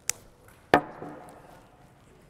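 A sharp click, then a louder knock about three quarters of a second in, from small things being handled and set down on a wooden worktable.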